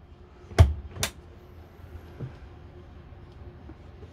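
Two sharp knocks about half a second apart, the first louder with a low thump, then a faint tap: the motorhome's interior furniture being handled.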